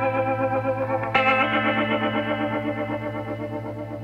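Background music: sustained, shimmering chords on an electric guitar with chorus and distortion effects, a new chord struck about a second in and slowly fading.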